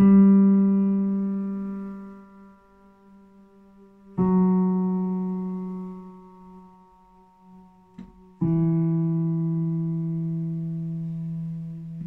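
Stage keyboard with a piano sound playing a slow improvisation: three sustained chords struck about four seconds apart, each left to ring and fade. A light click comes just before the third chord.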